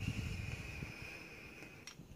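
An e-cigarette mod drawn on in a long inhale: air pulled through it makes a faint steady high whistle that slowly fades, with a click near the end.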